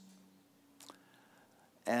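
Near silence (room tone) in a pause between a man's spoken sentences, with one faint click a little under a second in; his voice starts again near the end.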